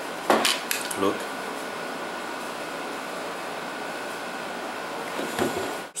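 Sharp plastic knocks and clicks as the opened Turnigy 9X transmitter's plastic case is handled: the loudest comes just after the start, with lighter ones around a second in and again shortly before the end. In between there is a steady low hiss of room noise.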